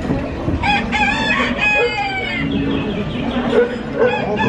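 Recorded rooster crowing once, a drawn-out cock-a-doodle-doo starting about a second in, played as the sound of an animatronic rooster. It sits over a steady low background noise.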